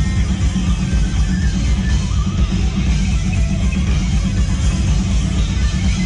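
Live three-piece metal band, drums and bass with no lead guitarist, playing loud and continuous through a club PA, the low end heavy and dense.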